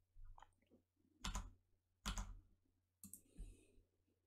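A few soft, sparse clicks of a computer mouse, the two plainest about a second and two seconds in, against near silence.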